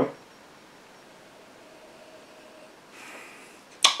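Quiet room tone, then about three seconds in a short, soft sniff as whisky is nosed from a tasting glass.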